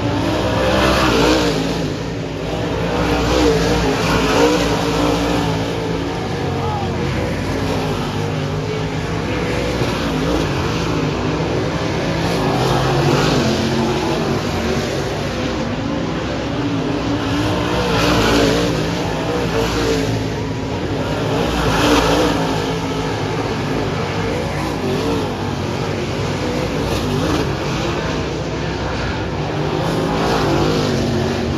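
Dirt-track race car engines running and revving as cars circle the oval, the sound swelling and fading as they pass the grandstand.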